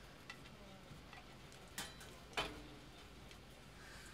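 A few faint clicks and then two sharper knocks about half a second apart a couple of seconds in, the second one the loudest with a short low ring, over a faint steady hum in a quiet room.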